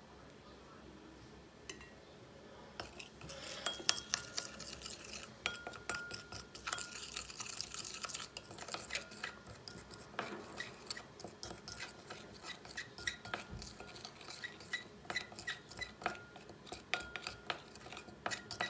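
Small plastic spoon stirring dry clay mask powder and water into a paste in a glass bowl: quick scraping taps and clinks against the glass, with brief ringing, starting about three seconds in.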